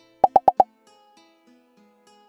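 Four quick cartoon pop sound effects in a row, an edited-in gag sound timed to question marks popping up on screen, followed by soft plucked background music.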